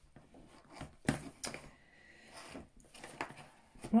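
Light clicks and knocks of craft supplies being picked up and moved about on a desk while rummaging. There are a few short knocks about a second in and again around three seconds in.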